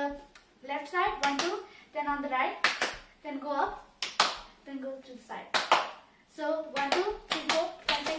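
Several sharp hand claps keeping time with bhangra dance steps, over a girl's voice sounding out the rhythm.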